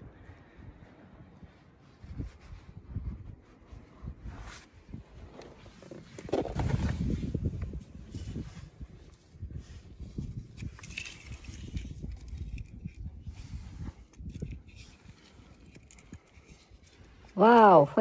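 Rustling and scuffing of a hand searching through dry beach grass and sand, with handling bumps, louder for a couple of seconds about six seconds in. A voice with music starts right at the end.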